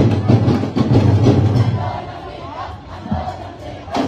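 A festival street crowd and dance contingent shouting over loud drum-beat music. The drumming eases off about halfway through, leaving mostly crowd noise, and starts to build again near the end.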